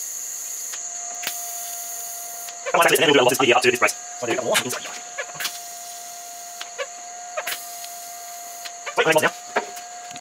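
MIG welder tack-welding steel frame tubing: a steady hissing crackle of the arc for about the first two and a half seconds, then it stops. A faint steady whine carries on underneath.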